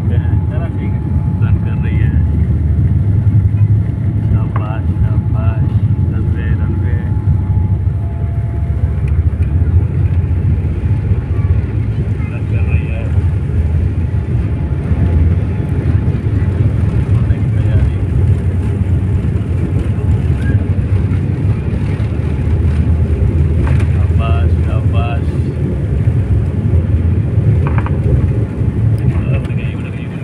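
Steady low rumble of a twin-engine jet airliner taxiing on the ground, heard from inside the passenger cabin.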